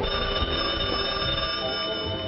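A telephone bell ringing once: a single ring of about two seconds that starts suddenly, over background music.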